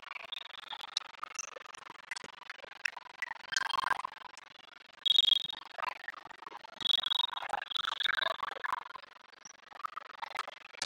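Volleyball gym ambience: low chatter of players and spectators, with two short high-pitched chirps about five and seven seconds in.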